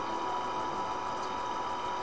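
Steady background hiss with a thin, constant high tone running through it and no other sound.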